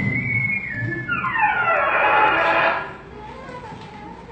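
A high whistle-like tone held for about a second, then a long falling glide in pitch that lasts about two seconds and fades, like a cartoon falling sound effect.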